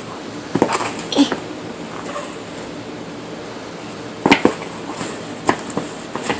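Puzzle pieces knocking and clicking against the puzzle board as a toddler handles them: a few separate taps, the loudest about four seconds in.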